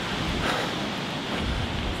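Steady rushing noise of wind on the microphone, with low buffeting that grows stronger near the end.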